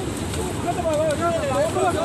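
A person's voice talking over a steady background noise.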